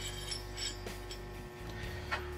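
Quiet room tone with a steady low hum and a few faint ticks or clinks.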